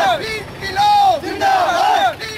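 Protesters shouting slogans together in a loud, rhythmic chant of short shouted phrases.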